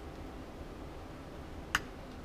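Hand sewing through denim: quiet handling of needle and thread over a steady low hiss, with one short, sharp click near the end.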